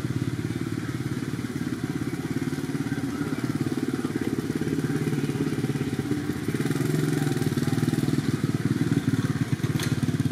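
A small engine running steadily, an even low drone of fast pulses, with a sharp click just before the end.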